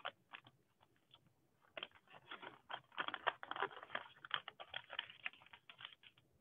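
Faint crinkling and rustling of origami paper being handled and folded, a string of quick irregular crackles, sparse at first and busier from about two seconds in.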